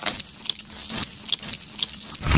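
A quick, irregular run of crisp clicks and crunches, the kind of dubbed sound effect for grubs chewing and boring through the kernels of a corn cob.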